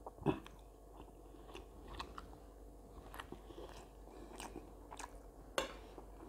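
A person chewing a mouthful of rice with soft, scattered mouth clicks, the loudest about a quarter second in. A sharper click comes near the end as the fork goes back down into the plate.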